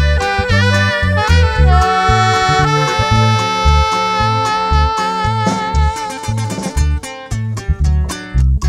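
Norteño band playing an instrumental passage: saxophone and button accordion carrying the melody over a steady bass and drum beat, with a long held note through the middle.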